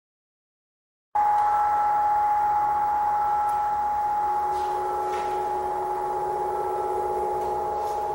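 A steady drone of several held ringing tones, one high tone the strongest, starting abruptly about a second in after silence. A lower tone joins about four seconds in.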